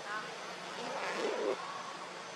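Outdoor background noise with a steady low hum and distant, indistinct voices, loudest about a second in.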